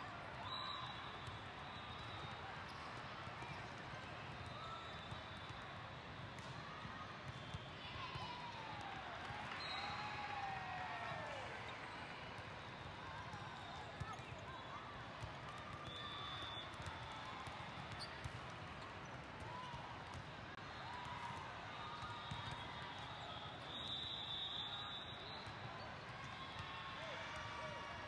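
Echoing background din of a large hall full of volleyball courts: many overlapping voices and shouts, with scattered sharp knocks of balls being hit and bouncing. Short high whistle-like tones sound a few times.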